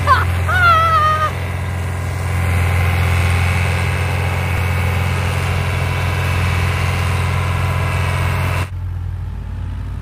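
Combine harvester running steadily as it cuts and threshes oats: a constant low engine drone with a steady higher hum over it. Near the end it drops suddenly to a quieter hum.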